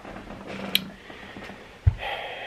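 Quiet room with a faint steady hum, a single small click about three-quarters of a second in, and a short low thump near the end.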